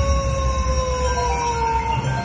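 Wolf-howl sound effect from an IGT Wolf Run Gold slot machine: one long howl that glides up, holds and slowly sinks, over a steady low rumble.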